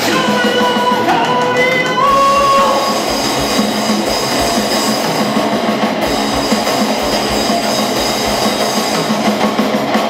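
Heavy metal band playing live: distorted electric guitars, bass and drums, loud and dense. A held vocal line is sung over the first few seconds, then the band plays on without it.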